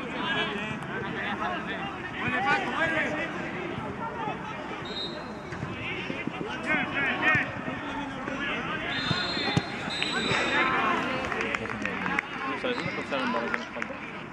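Indistinct shouts and calls of footballers during play, with a few thuds of the ball being kicked.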